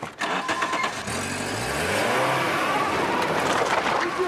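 A motor vehicle engine, revving up with a rising pitch about a second in, then running steadily and loudly.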